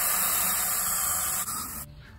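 Water running into a two-gallon watering can, a steady rushing hiss that stops abruptly near the end.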